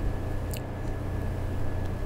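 Steady low background hum with one light click about half a second in.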